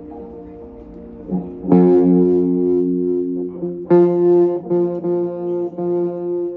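Electric guitar played alone through an amplifier: a quiet chord rings first, then louder chords are struck just under two seconds in and again about four seconds in, each left to ring.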